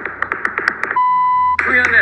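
A single steady electronic bleep, the kind of bleep sound effect dropped into a TV variety show, starting about a second in and lasting about half a second, among sharp clicks and voices.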